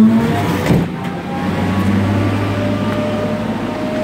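Butler truckmount carpet-cleaning machine's engine running. Its hum shifts in the first second, with a single knock about three-quarters of a second in, then settles to a steady lower hum.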